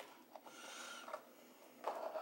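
Faint rubbing and scraping of fingers against a small cardboard advent-calendar drawer, with a couple of light clicks as it is handled.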